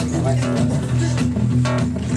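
Acoustic guitars playing a strummed accompaniment over a steady, evenly repeating low bass pattern.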